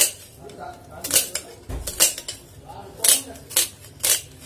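Kitchen knife slicing a red onion, the blade knocking on the cutting surface with each cut: about five sharp knocks, roughly one a second.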